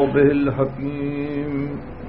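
A man reciting Arabic in a slow, chanted intonation, holding two long notes before trailing off near the end. The sound is dull and narrow, as on an old tape recording.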